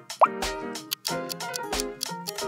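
A short rising 'bloop' sound effect as a countdown timer pops up, followed by light background music with a steady beat.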